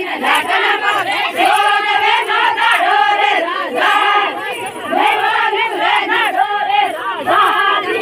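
A group of women singing a Bhili wedding song together in loud, repeated phrases.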